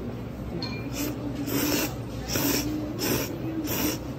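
A person slurping ramen noodles: a run of about five short, hissing slurps, one every half second or so, the louder ones in the second half.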